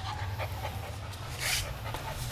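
German Shepherd puppy panting in short breaths.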